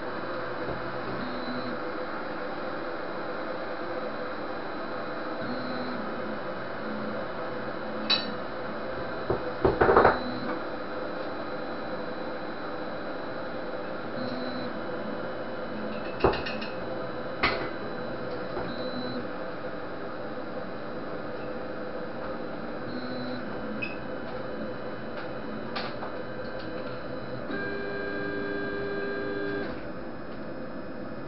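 Anet ET4+ 3D printer running: its stepper motors give short pitched whines that start and stop as the print head moves, over a steady hum. A few sharp clicks come around the middle, and a longer whine of several tones near the end.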